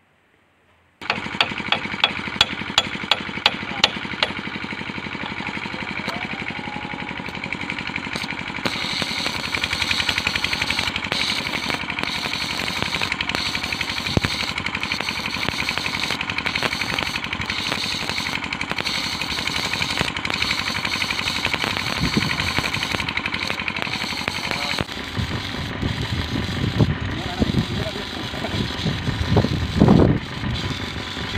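Manual stick (arc) welding on a steel rail: the arc starts about a second in with a few sharp crackles as it is struck, then runs as a steady crackling sizzle while weld metal is built up layer by layer on a worn switch tongue rail.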